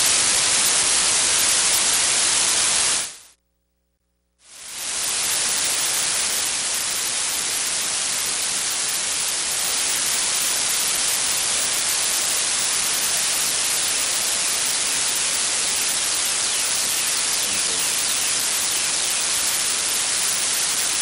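Loud, steady static hiss from a fault in the meeting's audio feed, drowning out the room. It cuts to dead silence for about a second a little over three seconds in, then comes back at the same level.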